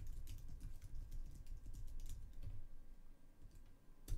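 Typing on a computer keyboard: a quick run of key clicks that thins out after about two and a half seconds.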